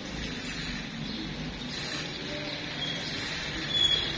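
Steady outdoor background noise, with a short high chirp near the end.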